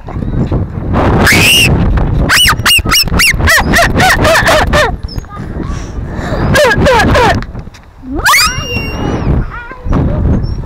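Children shrieking and laughing on playground swings: high squeals that swoop up and down, a quick run of laughing calls in the middle, and a long rising shriek near the end, over a low rumble of wind on the microphone as the camera swings.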